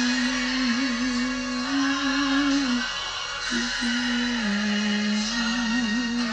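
Slow worship music: a voice holding long notes of two to three seconds each over an accompaniment, with a short break between notes about three seconds in.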